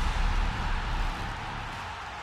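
The fading tail of a television broadcast's intro sting: a broad whooshing rumble with deep bass dies away over about two seconds.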